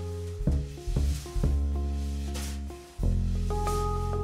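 Handpan jazz trio playing: ringing handpan notes over deep upright double bass notes, with drums and cymbal touches. New bass notes enter about half a second, one second, one and a half seconds and three seconds in.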